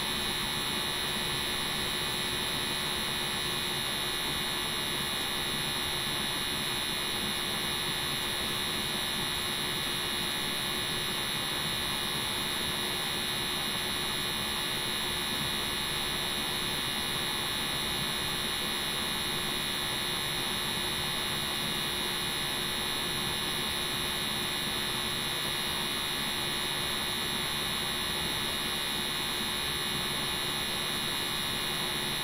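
Steady electrical hum and hiss with a high, unchanging whine, holding level throughout with no distinct events.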